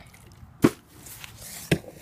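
Two sharp knocks about a second apart.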